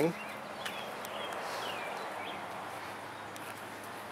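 Steady outdoor background noise with a faint low hum and a few faint high bird chirps.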